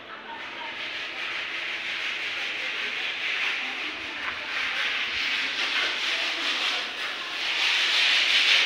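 Steady scrubbing and rubbing on a wet concrete floor, done by hand, growing louder near the end.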